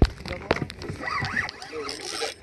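Excited voices calling out over the water, with two sharp clicks or knocks, the first at the very start and the second about half a second in.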